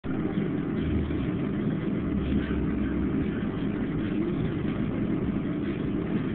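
A steady low hum with background noise, like a running machine, holding even throughout.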